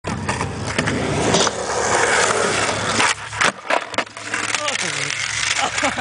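Skateboard wheels rolling over wet concrete, then sharp clacks and a crash about three seconds in as a heelflip fails and the board and rider hit the ground.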